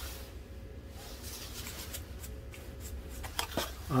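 Low steady background hum with light handling of plastic spice shakers, and a couple of soft clicks about three and a half seconds in.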